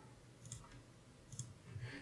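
Two faint computer mouse clicks, about a second apart, as the material is applied to the model in the software.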